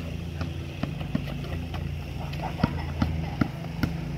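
A basketball bounced on an asphalt driveway during dribbling, about eight sharp bounces at an uneven pace. A steady low hum runs underneath.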